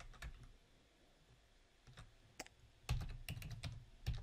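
Computer keyboard keystrokes as a password is typed: a few taps near the start, a short pause, then a quick run of keys about three seconds in.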